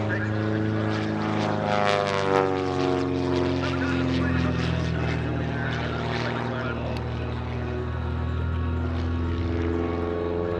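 Super Chipmunk aerobatic plane's piston engine and propeller running steadily overhead during a manoeuvre. About two seconds in, the engine note slides down in pitch, then holds level.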